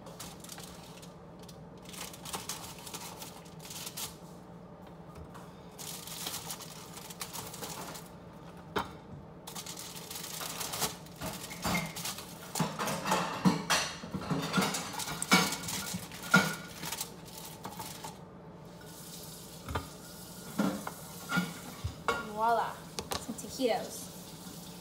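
Plastic spatula scraping and lifting taquitos off a foil-lined baking sheet, the aluminum foil crinkling and crackling, busiest around the middle. A low steady hum runs underneath.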